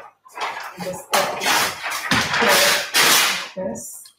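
A large sheet of freezer paper rustling and crinkling as it is handled and pressed against a painting on paper, in several loud stretches about a second long.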